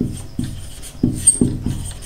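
Felt-tip marker writing on a whiteboard: a run of short, squeaky strokes a few tenths of a second apart as letters are drawn.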